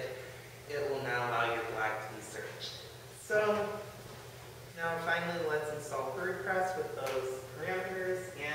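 Speech only: a man talking, with a short pause midway.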